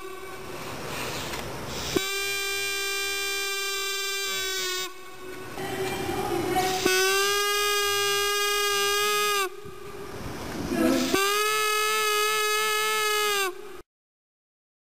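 Paper flute, a rolled paper tube with a cut flap at one end, sounded by sucking air through it so the paper flap vibrates: three long steady notes of about two and a half seconds each, with breath noise between them. It cuts off just before the end.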